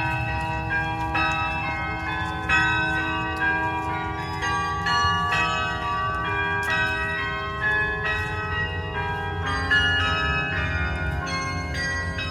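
Tower bells ringing a slow tune, several different pitches struck one after another and left to ring on, over a steady low outdoor rumble.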